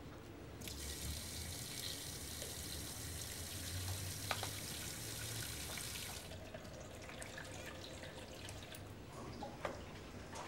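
Water running from a tap into a stainless-steel washing tank, starting just under a second in and stopping about six seconds in. Afterwards, faint splashes and a few small knocks as a rod stirs fabric in the water.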